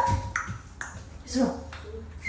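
Short vocal sounds from a person's voice, a rising call right at the start and another about halfway through, over a steady low hum.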